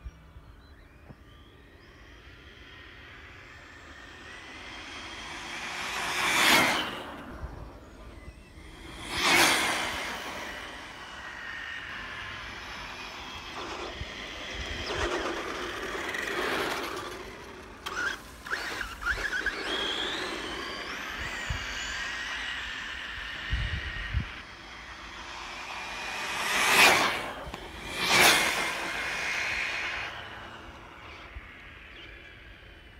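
FTX Viper brushless RC buggy on a 4S LiPo making high-speed passes: its motor whine and tyre noise rise and fall sharply as it shoots past, twice in the first ten seconds and twice in quick succession near the end. In between it runs slower and closer, its whine rising and falling.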